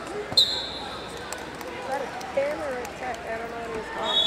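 A wrestling referee's whistle: one short, shrill blast about half a second in, stopping the action on the mat, over scattered voices of coaches and spectators in a large hall.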